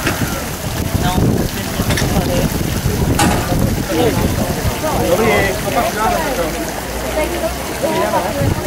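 Wind rumbling on the microphone, with indistinct voices talking about halfway through and again near the end, and a single sharp click about three seconds in.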